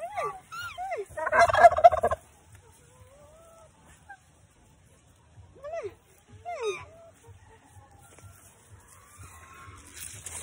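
Domestic geese honking in short calls that rise and fall in pitch. About a second in comes a louder, rapid turkey gobble lasting under a second. Two more honks follow near the middle.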